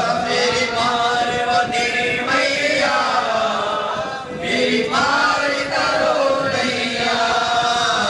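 Male voices chanting mantras in a steady, continuous sing-song, with one brief pause about four seconds in.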